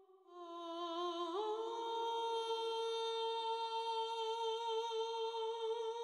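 A wordless hummed or sung vocal note from the film's score. It starts low, glides up a step about a second in, and is then held with a slight vibrato.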